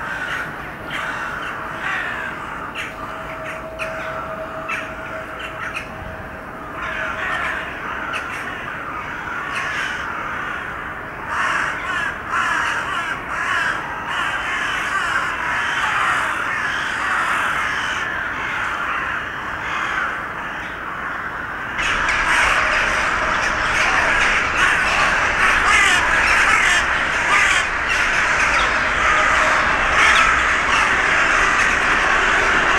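A large winter roost of hooded crows and rooks, many birds cawing at once in a dense, unbroken chorus of overlapping calls. Partway through it suddenly gets louder and fuller.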